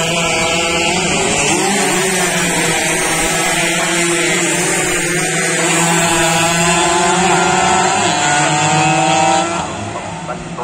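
Two-stroke underbone race motorcycles of the Yamaha F1ZR class running at high revs as they race past. Several engine notes overlap, rising and falling slightly in pitch, and the sound drops a little just before the end.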